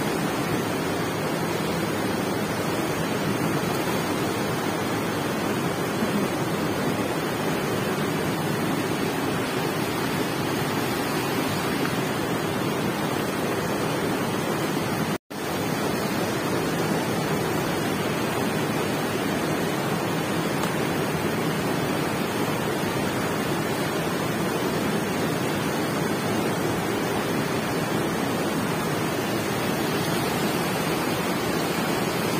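Fast, silty mountain river rushing steadily over rocks, an even wash of water noise. It cuts out completely for an instant about halfway through.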